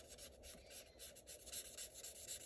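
Faint, quick strokes of a felt-tip marker rubbing on cardstock, several a second, blending colour into a stamped flower.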